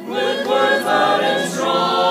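Mixed choir of men's and women's voices singing: a brief break between phrases at the start, then a new phrase that settles into a held chord about two-thirds of the way through.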